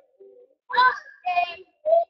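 A child singing: quiet at first, then three loud sung phrases in the second half.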